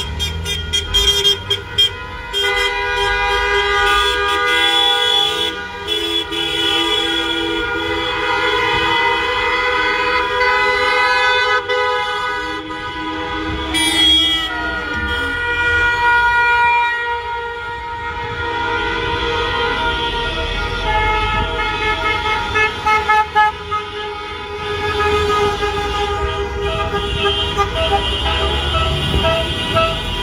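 Many car horns honking at once, overlapping and sustained in a buzinaço, a mass honk of support from a motorcade, over the low running of car engines.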